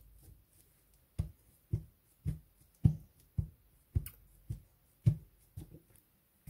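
Hands patting and pressing fabric down onto a freshly glued journal cover, soft thumps about twice a second.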